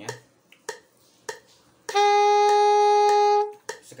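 Soprano saxophone sounding one steady held note for about a second and a half, starting about two seconds in, preceded by a few soft clicks. The note demonstrates one of several alternative fingerings, here index finger with index finger, that give the same note.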